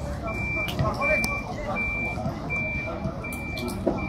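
A vehicle's reversing alarm sounding a steady series of high, evenly spaced beeps, about five in four seconds.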